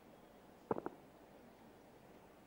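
A quick cluster of three sharp clicks, close together, about three-quarters of a second in, over a quiet room hush.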